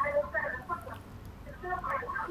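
A phone-in caller's voice coming over the telephone line: thin, narrow-band speech, quieter than the studio voices, with the words hard to make out.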